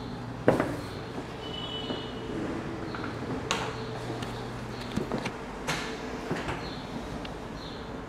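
Footsteps on hard floors and the knocks and clicks of doors being handled, the loudest about half a second in, over a steady low hum.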